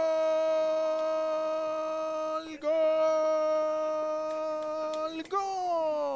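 A football commentator's long, drawn-out "goooal" call: a man's shouting voice holding one high note, breaking for a breath about two and a half seconds in, then held again and sliding down in pitch near the end.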